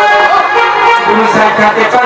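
Traditional Odia folk music for Danda Nrutya, a loud continuous melody that wavers and bends in pitch.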